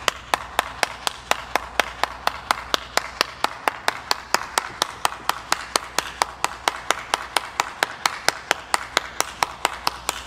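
One person clapping their hands steadily, about five claps a second.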